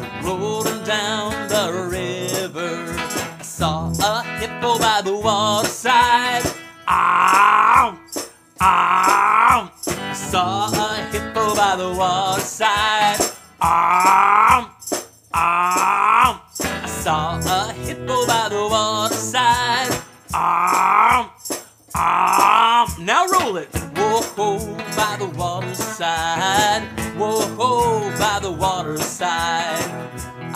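A man singing with loud, repeated vocal calls, about six of them in the middle of the stretch, over a children's rock song played on a Gretsch hollow-body electric guitar with a tremolo effect.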